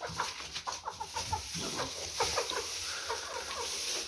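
A hen clucking in a rapid run of short, falling notes, over the dry rustle of straw being pushed into a wooden crate.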